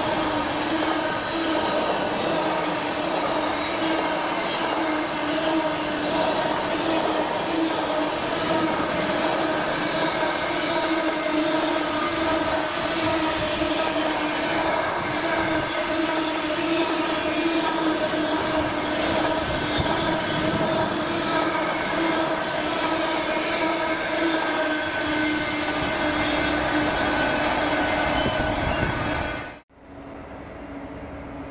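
Container wagons of an intermodal freight train rolling past at speed: a steady rumble of wheels on rail with a sustained pitched whine over it. The sound cuts off abruptly just before the end.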